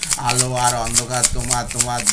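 A man singing a Bengali rock song, holding a long note, while shaking a plastic bottle like a shaker in a steady rhythm.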